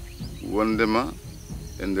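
Steady high chirring of insects, like crickets, under a man's speech.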